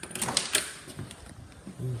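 A door being unlocked and opened: a few sharp clicks and rattles in the first half second or so, then quieter handling noise.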